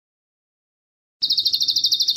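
Recorded song of a bar-winged prinia (ciblek), played as a masteran track: a rapid, high chattering run of about twelve notes a second that cuts in suddenly a little over a second in.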